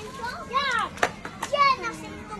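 Young children's high-pitched voices calling out at play, with two short calls and a sharp click between them.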